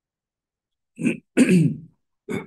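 A man clearing his throat about a second in: a short catch, then a longer, louder clear.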